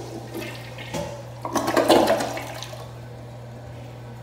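Kohler Cimarron toilet flushing: water rushes and swirls down the bowl, surging loudest about halfway through, then dies down.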